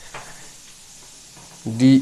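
Faint steady hiss of background noise in a small room, with no clear event in it, and a single spoken syllable near the end.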